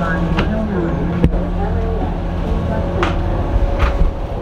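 City bus engine running at idle, a steady low rumble, with a few sharp clicks or knocks, the loudest about a second in.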